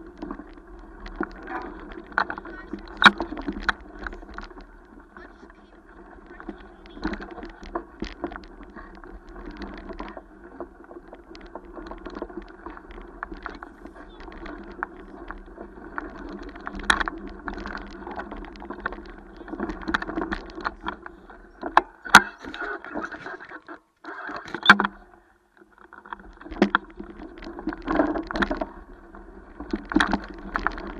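A bike and its handlebar camera rattling and knocking over a bumpy dirt trail, above a steady low hum. The hum cuts out for a moment about 24 seconds in, then comes back.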